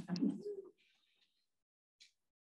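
A person's brief low murmured vocal sound, pitched and bending, lasting under a second, then silence.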